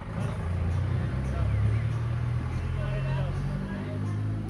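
A motor vehicle's engine running at a steady low hum that shifts in pitch slightly about half a second in and again near the end, with faint voices in the background.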